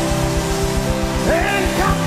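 Live worship band music: a held chord over a steady rapid pulse in the bass, with one voice sliding upward about a second and a half in.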